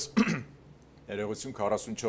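Only speech: a man talking in a studio, with a short pause about half a second in before he speaks on.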